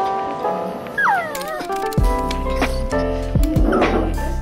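A Bichon Frise whining to be given meat: a high whimper that falls in pitch about a second in, and a shorter one near the end. Background music plays throughout and is louder than the whining.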